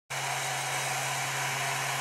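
Hot air gun running steadily, a smooth blower hiss over a low motor hum. It is heating the bimetal element of a furnace fan limit control to turn its dial and close the fan switch contacts.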